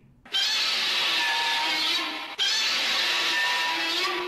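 Godzilla roar sound effect: a loud, rasping, screeching roar, sounded twice in a row, each about two seconds long.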